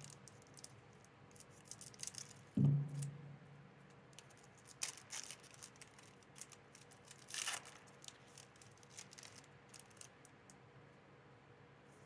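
Foil booster-pack wrapper crinkling in gloved hands and being torn open, with small crackles throughout and two short rips, about five and seven and a half seconds in. A dull thump comes about two and a half seconds in.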